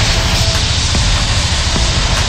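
Loud, steady machine noise in a tiled workshop bay: a deep rumble under a strong, even hiss.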